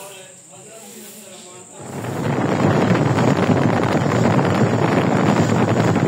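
Faint distant voices, then, about two seconds in, loud steady wind noise buffeting the microphone takes over.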